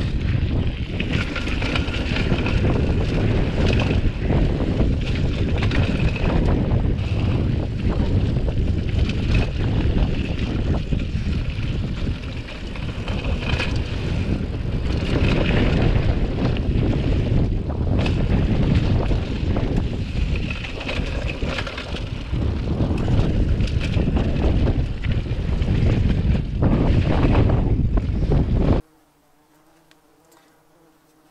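Mountain-bike descent heard from a camera on the rider: steady wind rush on the microphone with tyres rolling over a gravelly dirt trail and many short clicks and knocks as the hardtail cross-country bike rattles over bumps. It cuts off abruptly about a second before the end.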